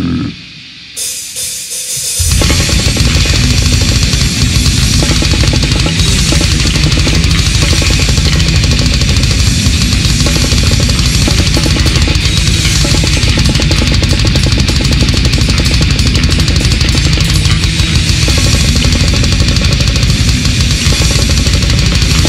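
Heavy metal band with distorted electric guitars and a drum kit. After a brief lull, the full band comes in about two seconds in and plays on, dense and loud.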